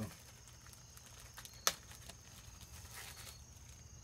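Faint, steady high-pitched trill of crickets, with a single sharp click about a second and a half in.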